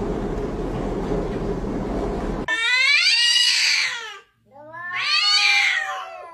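Domestic cats in a face-off, one giving two long, drawn-out yowls of territorial caterwauling that waver in pitch, starting about two and a half seconds in. Before them comes a couple of seconds of steady muffled noise that cuts off abruptly.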